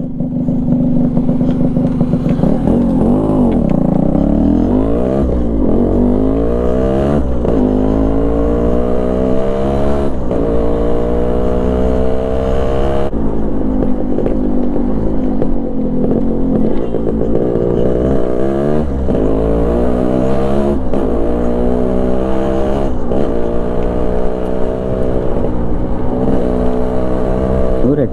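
Yamaha RXZ 132 cc single-cylinder two-stroke engine pulling away and riding on, its note rising and falling every couple of seconds as it accelerates and changes gear.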